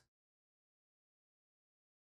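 Near silence: the sound track is blank, with no room tone.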